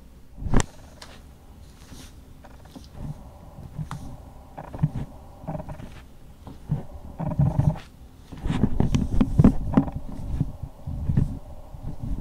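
Camera handling noise: the camera is being picked up and moved about, with a sharp knock about half a second in, then scattered knocks and rustling, and a louder stretch of rumbling handling about two-thirds of the way through.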